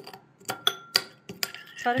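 Metal spoon clinking and scraping against a ceramic bowl as crushed tortilla chips are stirred into yogurt: a string of light, irregular clicks.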